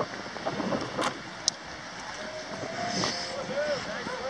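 Wind rushing over the microphone, with faint distant voices near the end and a couple of sharp clicks in the first half.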